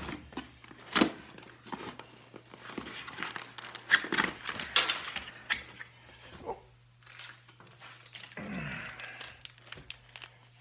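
Plastic packaging crinkling and rustling in irregular bursts, with a few sharp clicks, as small carburettor parts are unwrapped and handled.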